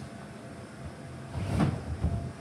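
Heavy low thumps about one and a half seconds in from a child landing on an inflatable bounce house, over the steady low hum of its blower.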